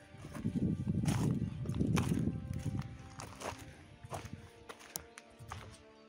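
Footsteps on rough ground over steady background music; the steps are loudest in the first three seconds and fade after that.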